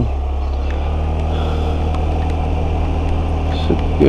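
Motorcycle engine running steadily under way: a constant low hum with an even whoosh of road and wind noise.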